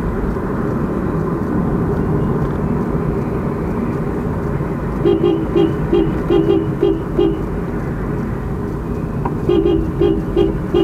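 Steady road and engine noise heard inside a moving car's cabin. About halfway through, a vehicle horn sounds in a quick series of short toots, roughly three a second for a couple of seconds, and starts tooting again near the end.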